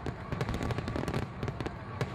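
Fireworks crackling: a rapid, dense run of small pops.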